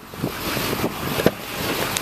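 Duramax 6.6 L diesel V8 idling, heard from inside the cab under a steady rushing noise from wind or handling on the microphone, with one short knock a little past a second in.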